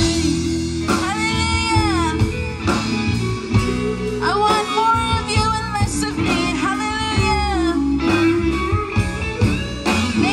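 A woman singing into a microphone, backed by a live band with electric guitars, all heard through a PA. Her held, wavering notes come in phrases with short gaps between them.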